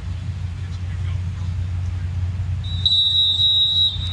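A referee's whistle blown once near the end, one steady high-pitched blast about a second long, signalling the penalty taker to go. Under it runs a steady low stadium rumble.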